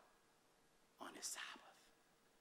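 Near silence with room tone, broken about a second in by a brief, soft, breathy whisper from a man's voice at the pulpit microphone.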